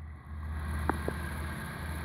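Fidget spinner spinning on a tabletop: a steady low whir, with two faint ticks around the middle.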